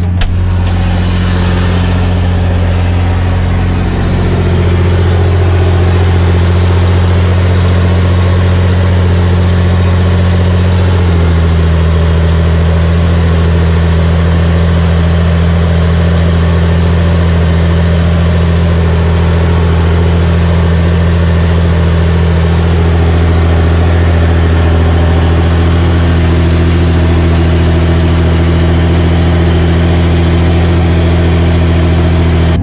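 Massey Ferguson 8470 tractor's six-cylinder diesel engine running steadily under heavy load, pulling an eight-furrow plough, heard close to the exhaust stack. It gets louder about four seconds in, and its note shifts slightly about eleven seconds in.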